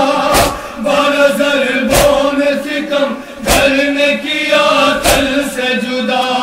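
Male voices chanting a nauha, a Shia lament, in a slow sung line led by a reciter. Four sharp slaps of group chest-beating (matam) keep the beat, about one every one and a half seconds.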